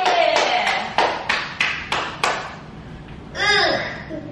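Hand clapping in an even beat, about three claps a second for some two seconds, with a voice held at the start. A short vocal sound follows near the end.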